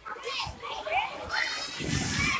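Children's voices calling and chattering as they play, several at once and overlapping.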